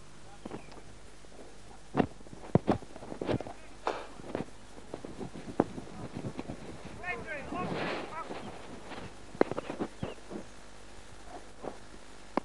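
Faint distant voices, heard mainly around the middle, over a quiet outdoor background, with a dozen scattered light clicks and knocks spread through it.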